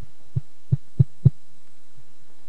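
Footsteps descending the aisle stairs of the auditorium close to the microphone: four dull, low thuds about a third of a second apart, each louder than the one before, over a faint steady room hum.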